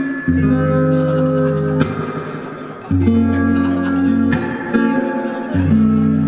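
Live rock band playing, with electric guitar and bass holding long chords that change every second or two.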